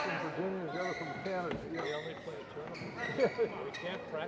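Indistinct chatter of several voices echoing in a large sports hall. A few short, sharp knocks come through it, the loudest a little after three seconds in.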